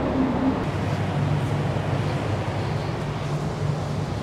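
Steady low hum of a yacht transporter ship's engines and machinery under a constant rushing noise, as heard on deck at sea.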